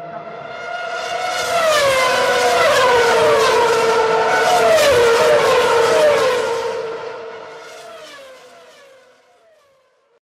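Race car engine sound effect at high revs, swelling up and then fading away, its pitch dropping sharply several times in the middle, like quick gear changes.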